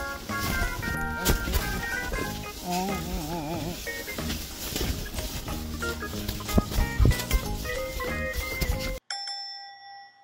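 Background music with a beat and a wavering melody line, a few sharp knocks shortly before it ends. About nine seconds in the music stops and a bell-like chime sound effect rings and fades.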